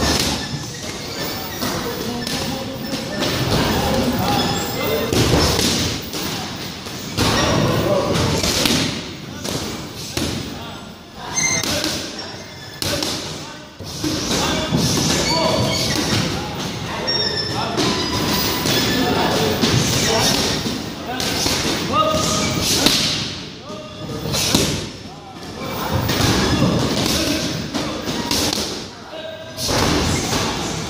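Muay Thai pad work: gloved punches and shin kicks landing on leather Thai pads held by a trainer, making repeated thuds in quick combinations throughout.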